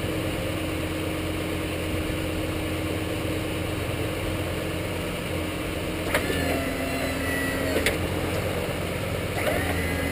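Ford F-250's 6.8-litre V10 idling steadily. About six seconds in, the Western plow's electric hydraulic pump clicks on and runs with a steady hum for under two seconds, then clicks off. It starts again with a click near the end as the blade swings to an angle.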